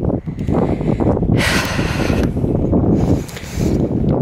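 Wind buffeting the camera microphone as a steady low rumble. A louder hiss comes about a third of the way in and lasts under a second.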